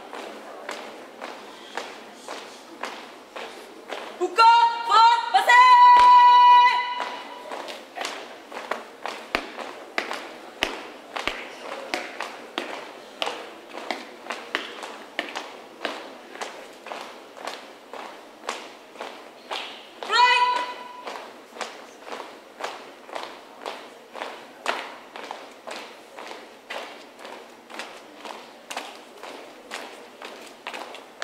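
A squad marching in step on a paved yard, shoes stamping in a steady rhythm of about two steps a second. A loud, high shouted marching command comes about four seconds in, and a shorter one about twenty seconds in.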